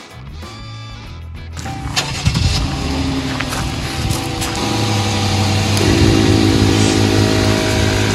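Background music for the first second or so, then a car engine is cranked and starts about two seconds in and runs on at idle. From about six seconds a steady hum joins it: the Viair portable air compressor, which draws its power from the running car, starting up.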